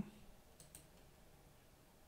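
Near silence, with a couple of faint computer mouse clicks about two-thirds of a second in.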